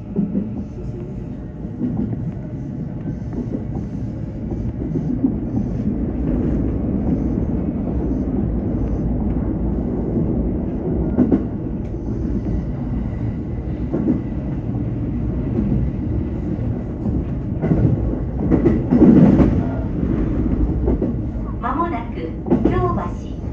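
Electric commuter train running along the line, heard from the driver's cab: a steady rumble of wheels on rail with occasional knocks over rail joints. A heavier clatter comes a few seconds before the end.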